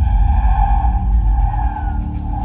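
Ominous trailer score and sound design starting abruptly: a deep, heavy low rumble under sustained eerie high tones, with a few slow falling glides.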